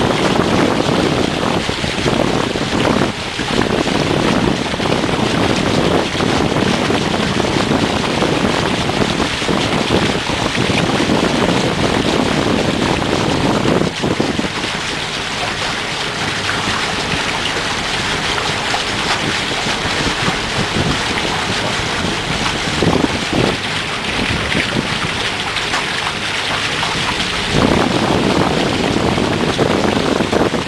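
Wind buffeting the microphone over water rushing along the hull of a sailing catamaran under way. The low buffeting eases about halfway through and returns near the end.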